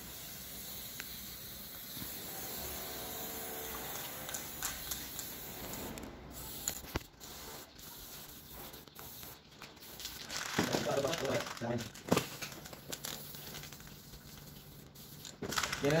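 Aerosol spray can hissing as paint is sprayed onto a bicycle frame: one long spray of about six seconds, then shorter bursts with brief pauses between them.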